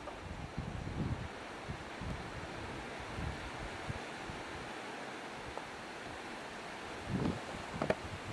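Wind buffeting the microphone outdoors: a steady rush with low gusts about a second in and again near the end.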